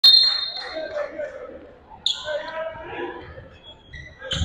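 Court sounds in a gym during a high school basketball game: a steady shrill referee's whistle for about the first second, then a second short, sharp high sound about two seconds in, with voices around the court.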